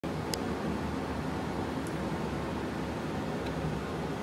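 Jeweler's handheld gas soldering torch burning with a steady rushing noise.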